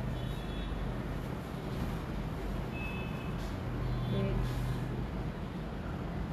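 Steady background noise with a constant low hum, broken by a few faint, short high-pitched tones.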